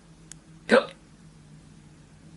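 A man's short spoken interjection, "naa", with a faint tick just before it.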